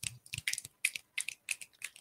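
A quick, uneven run of sharp clicks, about ten in two seconds.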